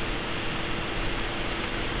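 Steady background noise between words: an even hiss with a faint, steady low hum.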